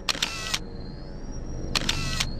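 Camera sound effect twice: a short mechanical click-and-whir, then the thin, slightly rising whine of a flash recharging. The two shots come about a second and a half apart.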